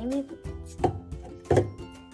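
Background music with held tones and a low beat, with two sharp knocks less than a second apart in the middle.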